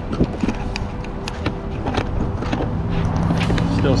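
Boat's bow-mounted electric trolling motor running with a steady hum, with scattered knocks and clicks from handling on deck. A lower steady tone comes in near the end.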